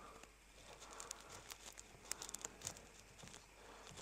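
Faint, irregular clicking and tapping of a utensil stirring oat pancake batter in a bowl.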